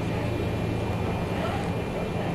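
Steady low droning hum, even in level throughout, with faint voices in the background.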